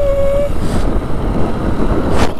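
Ride noise from a moving motor scooter, with wind on the microphone, the engine and the road making a dense low rumble. A steady high tone carries over from before and cuts off about half a second in.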